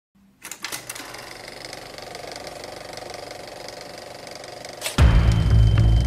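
Fast, even mechanical clattering, then about five seconds in a loud, bass-heavy music passage begins.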